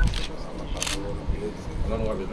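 Camera shutter clicks: one at the start and a sharper, louder one just under a second in, over low murmured voices.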